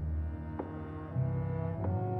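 Orchestral music from a violin concerto: sustained low notes, with sudden ringing notes entering about half a second in and again near the end.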